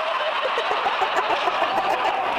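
Audience laughter from many people in a theatre hall, a dense, steady wash of overlapping laughs.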